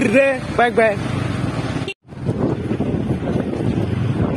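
Steady running and road noise of a scooter being ridden on a dirt lane, with a brief voice call in the first second. The sound cuts out sharply for a split second about two seconds in, then the riding noise picks up again.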